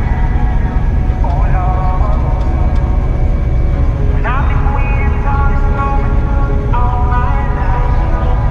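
Steady low rumble of a Claas Lexion 8800TT combine harvester heard from inside its cab while it works through the crop. Music with a voice plays over the machine noise.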